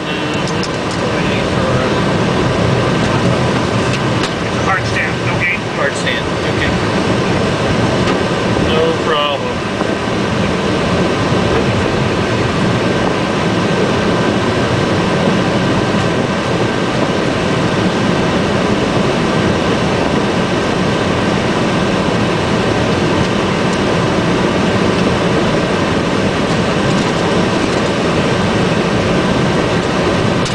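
Steady flight-deck noise of a Boeing 757-200ER taxiing after landing: idling engines and air-conditioning rush under a thin, steady whine.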